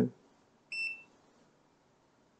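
One short electronic key beep from a KKMOON KKM828 handheld graphical multimeter, a little under a second in, as a button is pressed to change the meter's voltage range.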